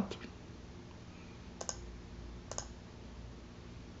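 Two faint, sharp clicks about a second apart, from a computer mouse being clicked, over a low steady hum.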